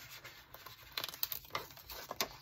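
A paper sticker sheet flexed in the hands while a sticker is peeled off its backing: faint crinkling, with a few small clicks in the middle.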